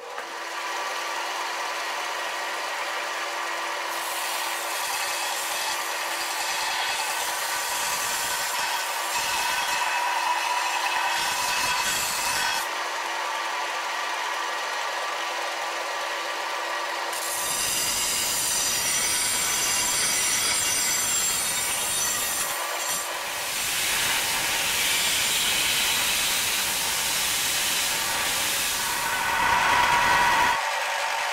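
Power grinding of saw-blade steel: a bench belt grinder running with the ulu blank pressed against the belt. The sound changes several times, with a steady hum under the first half.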